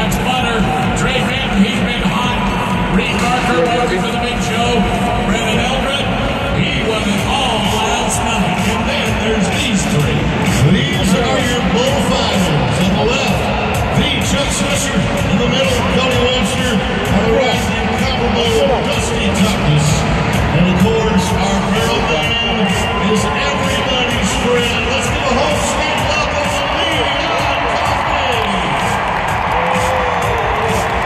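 Music and an amplified voice over an arena's public-address system, with the crowd's murmur and occasional cheers and whoops beneath.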